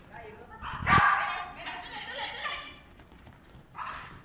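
A small white fluffy dog barking excitedly as an agility run starts, the loudest bark about a second in, mixed with a woman's calls to the dog.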